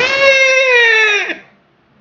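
A man's high-pitched mock scream, "ah!", held for about a second and a half and falling in pitch as it breaks off, acting out a woman screaming in fright.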